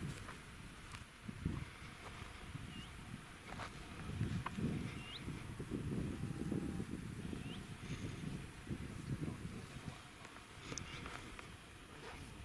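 Wind gusting on the microphone, coming and going in low rushes, with a few faint short high chirps scattered through it.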